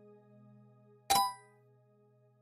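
A quiz sound effect: one sharp metallic clang about halfway through, ringing briefly and fading within half a second, over soft sustained background music tones. It marks the change to the next question.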